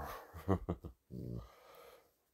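Dog making low-pitched grumbling vocal sounds while being petted: a few short ones, then a longer one about halfway through.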